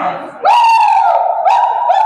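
A loud, high-pitched drawn-out vocal shout, one voice held steady on a single high note for about a second and a half.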